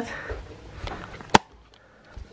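A single sharp click about one and a half seconds in, over faint rustling.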